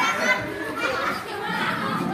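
A group of children talking, calling out and laughing over one another in a hall, a continuous overlapping chatter.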